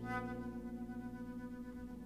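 A chamber ensemble of flute and ten players performing atonal concert music. A new bright, many-overtoned note enters at the start over a held low tone and then slowly fades.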